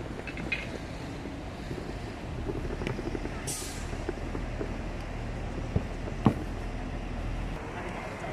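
City bus running with a steady low rumble, with a short air hiss like an air-brake release about three and a half seconds in. Two sharp knocks come near six seconds, the second the loudest sound.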